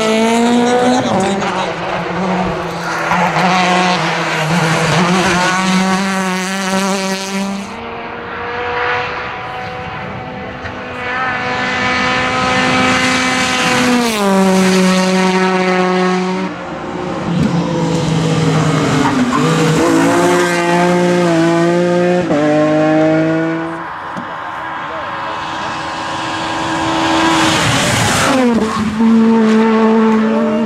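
Small front-wheel-drive rally cars, a Peugeot 208 R2 and an Opel Adam among them, driven flat out on a special stage. Their engines rev hard, with the pitch climbing and then dropping abruptly several times.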